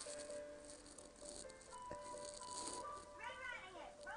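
A woman's pained, wailing cry rises and falls about three seconds in as her mouth burns from a very hot pepper. Faint TV music with steady held notes plays underneath.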